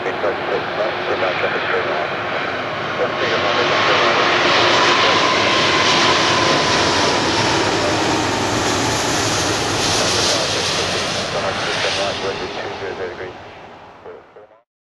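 Airbus A340-600 on final approach passing low overhead, the roar of its four Rolls-Royce Trent 500 turbofans swelling from about three seconds in, with a faint whine that drops slightly in pitch. The roar fades away near the end.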